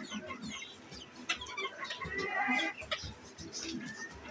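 Mottled bantam chickens clucking as they feed, with a louder run of calls a little past two seconds in.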